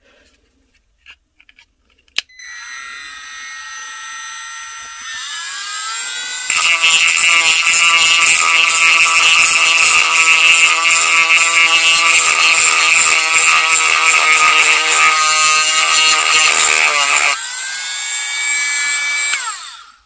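Milwaukee M12 C12RT cordless rotary tool switched on with a click about two seconds in, its motor whining and rising in pitch as the speed is turned up. Its sanding band then grinds against the edge of a wooden slingshot frame for about ten seconds, much louder and rougher. The tool runs free for a moment and spins down near the end.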